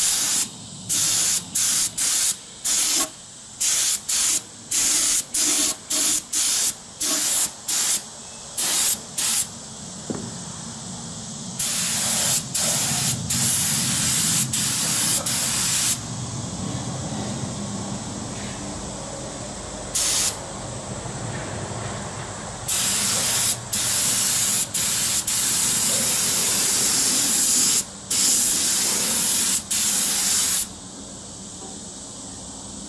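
Compressed-air paint spray gun spraying paint onto a steel trailer frame: about a dozen short trigger bursts of hiss in the first ten seconds, then longer passes of several seconds each.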